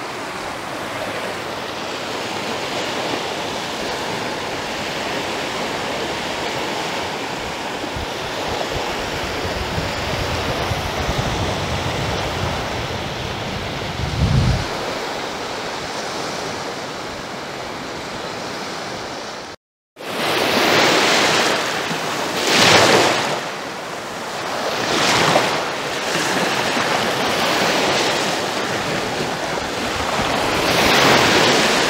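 Small sea waves washing onto a sandy shore, with wind rumbling on the microphone. After a short break about two-thirds of the way in, the surf is closer and louder, with waves surging in every two to three seconds.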